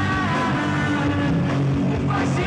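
Live rock band playing at full volume, an electric guitar through Marshall amplifiers over the rest of the band.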